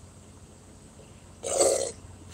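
One short, loud body noise from a person's mouth or throat, about a second and a half in, lasting about half a second.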